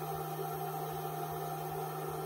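Steady low electrical hum from a running grid-tie inverter and its power supplies, with a fainter higher tone above it and a faint low pulsing about four times a second.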